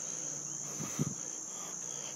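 A steady high-pitched tone running in the background, with a faint short vocal sound about a second in.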